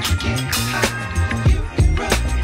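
Background music with a steady drum beat and a bass line.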